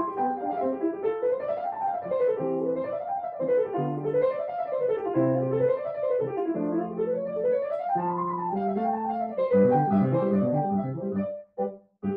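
Yamaha piano played: quick runs of notes rising and falling in waves over low left-hand notes, stopping just before the end.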